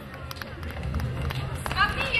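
Footsteps of folk dancers in boots shuffling and knocking on a wooden stage floor as they regroup, over a low rumble, with a voice starting up near the end.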